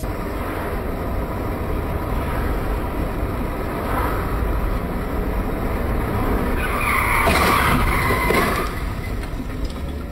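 Steady road and engine noise of a car driving, heard through a dashcam, with a tyre screech from about seven to eight and a half seconds in.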